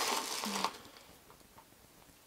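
A brief rustle of objects being handled, lasting well under a second, then quiet room tone.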